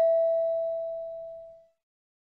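A single bell-like chime, struck once and ringing out as it fades away over about a second and a half. It is the cue tone in the listening-test recording that the next question is about to begin.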